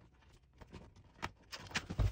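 Cardboard box being handled and its lid opened: faint scattered clicks and rustles, one sharper tap a little past a second in, growing louder near the end.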